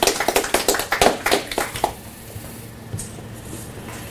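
A small audience applauding, the claps dying away about halfway through.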